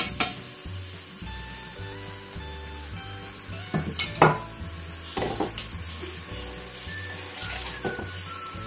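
A few sharp knocks as spices are tipped from a plate into a steel pressure cooker, the loudest about four seconds in, over background music with a steady low beat.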